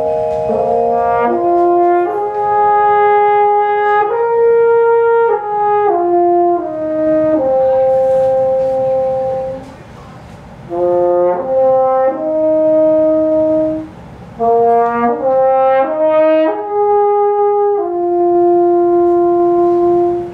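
French horn playing a slow melodic line of held notes in a contemporary chamber piece, in three phrases with short breaks a little before and after the middle.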